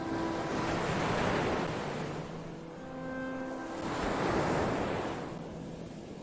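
Recorded ocean waves washing in twice, each swell rising and falling away, over faint sustained synthesizer notes.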